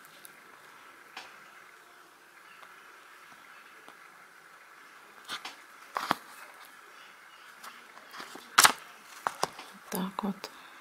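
Embroidery needle and thread working through plastic canvas as backstitches are sewn: a few sharp, irregular clicks over a faint steady hiss, the loudest near the end.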